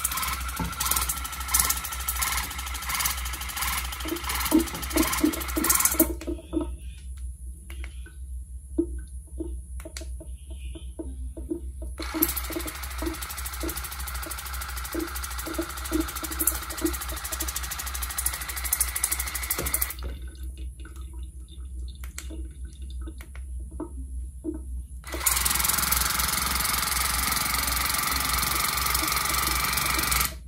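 Acleon TF200 cordless oral irrigator (water flosser) running, its small pump humming steadily while the water jet sprays onto a hand and into a sink. The sound shifts between louder spraying stretches and quieter stretches with a regular pulsing tick several times, every five to eight seconds, as its normal, soft and pulse pressure modes are switched.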